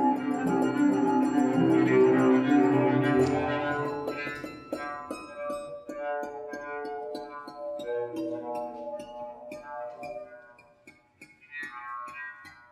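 Freely improvised piano and cello music. A loud, dense mass of sustained ringing tones lasts about four seconds, then thins out into sparse, separately struck pitched notes that ring on, growing quieter toward the end.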